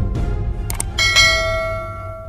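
Closing ident jingle for the channel logo: a low music bed with two quick clicks, then a bright bell-like chime struck about a second in that rings on and fades away.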